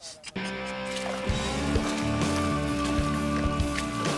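Background music that comes in suddenly about a third of a second in with held, sustained tones, joined by low drum hits from about a second in.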